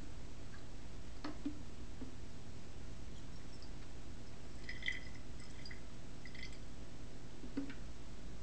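Hydrogen peroxide being poured from a bottle into a glass Erlenmeyer flask: faint trickling and a few soft glugs between about three and six and a half seconds in, over a steady low room hum, with a couple of light knocks of glass and bottle handling.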